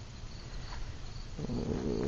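Crickets chirping in the background, a regular high chirp repeating a few times a second. A low rumbling noise comes in about one and a half seconds in.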